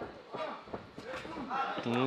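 Faint, indistinct men's voices, with a clearer man's voice coming in near the end.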